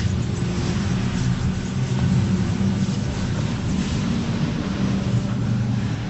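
A steady low droning hum with an even hiss over it, unchanging throughout.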